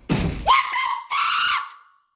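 A man screaming in shock: a rough, noisy burst at the start, then two long, high-pitched yells.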